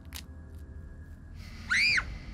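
A single short whistle-like call near the end, rising and then falling in pitch, over a low steady rumble.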